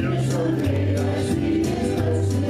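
Live gospel song: a woman singing into a microphone over electric guitar, with low held bass notes that change a few times.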